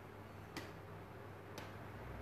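Quiet room tone with a steady low hum and a faint sharp tick about once a second, twice here.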